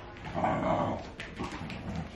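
A puppy giving two short calls: a louder one about half a second in, and a shorter one around the middle.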